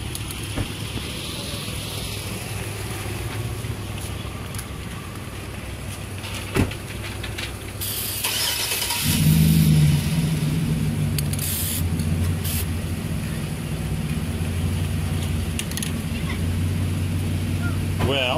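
Aerosol spray-paint can hissing as black paint is sprayed through a cardboard stencil, one longer spray about 8 s in and two short puffs a few seconds later. About halfway through, a steady low engine drone comes in and keeps going.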